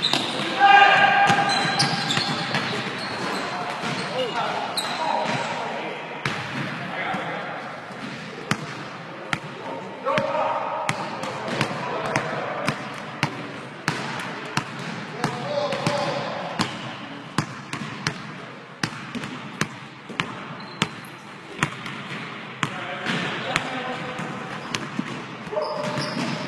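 A basketball bouncing on a hardwood gym floor, a run of sharp, repeated bounces during play, with players' voices calling out between them.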